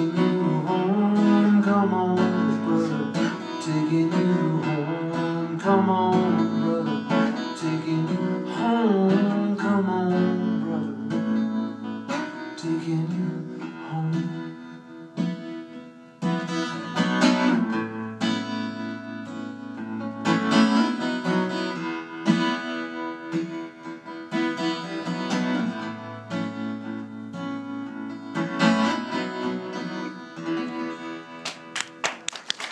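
Acoustic guitar playing the closing instrumental passage of a song live: picked melodic notes with strummed chords.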